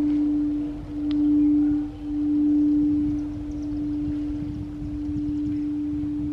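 A quartz crystal singing bowl sounding one sustained low tone, swelling and fading about once a second for the first few seconds, then holding steady.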